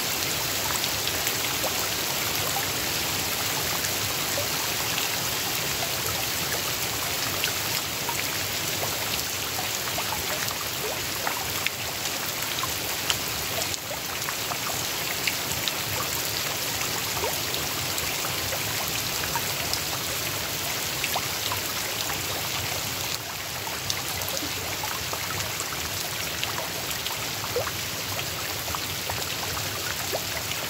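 Steady rain falling on the open water of a fish pond: a dense, even hiss of drops hitting the surface, with many small splashes and a few louder drop hits standing out here and there.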